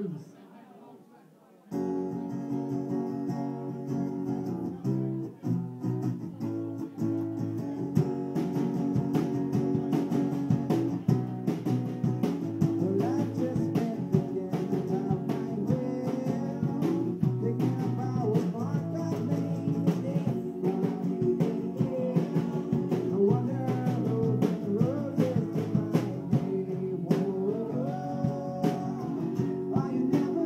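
Small acoustic band starting a blues number live about two seconds in: guitar chords with a hand-played drum keeping time, and a voice singing over it later.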